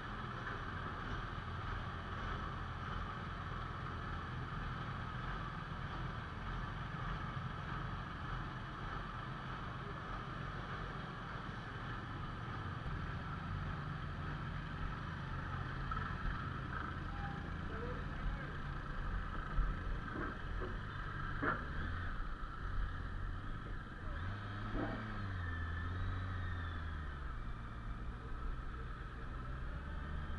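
Steady low drone of idling engines, motorcycles and the ferry, with a few knocks in the middle. In the last few seconds a low engine note steps up as the motorbikes move off.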